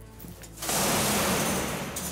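A welded sheet-steel trash bin pushed over and crashing onto the floor about half a second in, a loud metallic clatter that rings on for about a second. The impact knocks loose a hatch that was only tack-welded, never fully welded over.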